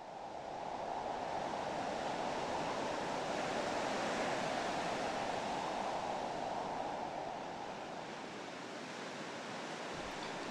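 Steady rushing coastal ambience of wind and distant surf. It fades in over the first second and drops slightly in level after about seven seconds.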